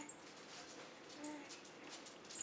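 Baby cooing softly: a brief faint coo at the start and another, slightly longer, about a second in, with a faint rattle in the background.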